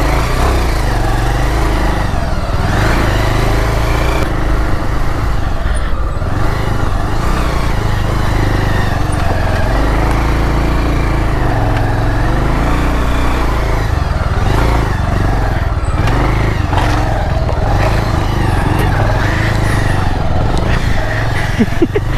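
Motorcycle engine running steadily while the bike is ridden along a narrow lane.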